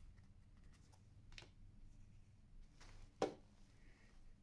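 Faint room tone with a light tap about a second and a half in, then one sharp click a little after three seconds: a chess clock's button pressed to end a turn.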